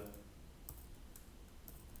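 A few faint, irregular keystrokes on a computer keyboard as a short line of code is typed.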